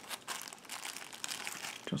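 Plastic wrapping crinkling and crackling in irregular small bursts as it is handled and the bookmark is slid off it.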